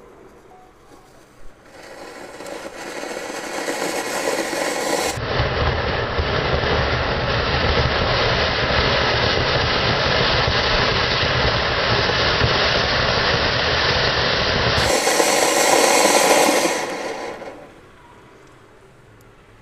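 Flower-pot firecracker (ground fountain) burning with a loud, steady hiss as it sprays sparks onto a padlock. The hiss builds over about three seconds, holds, and dies away about a second before the end.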